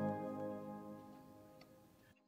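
The last sustained organ chord dying away, its steady tones fading out over about two seconds, with a faint click near the end.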